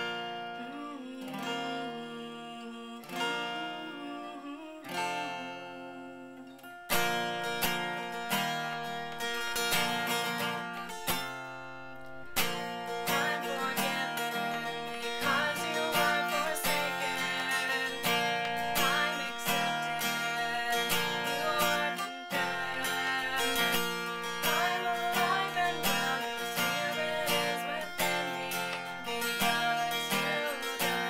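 Capoed acoustic guitar, opening with a few strummed chords left to ring, then settling into steady strumming about seven seconds in. A woman sings along over the guitar through the later part.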